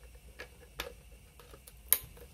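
Short plastic clicks from the housing of a Tenda O3 outdoor CPE being fitted together by hand: two light clicks, then one much louder click near the end.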